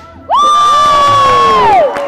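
A single loud, high-pitched yell that starts suddenly, holds one pitch for over a second and then falls away near the end, with crowd cheering beneath it as the ladder stunt finishes.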